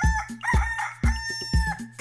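A rooster crowing, one long cock-a-doodle-doo that rises and holds before breaking off, over a steady drum beat.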